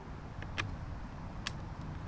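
Three light clicks, about half a second in, just after, and near the middle, as a Torx screwdriver is handled against the plastic housing of a battery-powered hydraulic cable crimper and set into a housing screw, over a low steady background noise.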